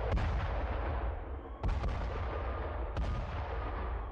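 Iron Dome air-defence blasts in the night sky: three sharp, loud booms about 1.3 s apart, each trailing off in a long echo.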